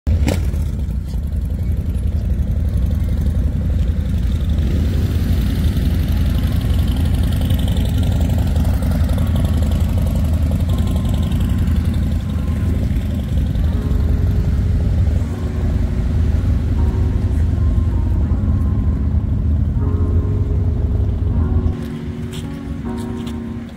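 Background music with a deep, steady low rumble beneath it. Held melodic notes come in about two-thirds of the way through.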